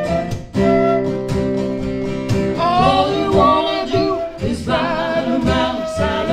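Live acoustic blues: two acoustic guitars strumming under harmonica chords held into the microphone. About two and a half seconds in, a woman's voice comes in singing, with a wavering vibrato.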